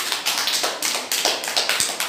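A small group of children clapping their hands, a quick, slightly uneven run of claps at about four or five a second.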